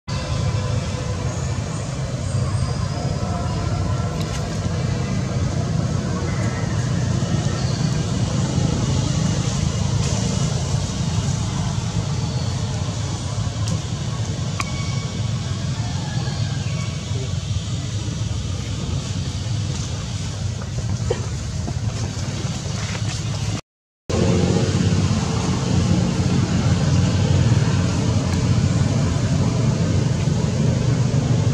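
A steady low rumble of outdoor background noise throughout, with a brief dropout about three-quarters of the way through.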